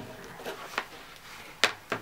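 Handling noise from a plastic clock radio being moved on a tabletop: faint rustles, then two sharp knocks near the end, about a quarter second apart.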